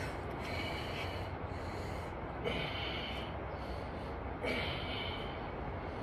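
A man breathing hard while lifting dumbbells, with three sharp, rasping breaths about two seconds apart over a steady low background hum.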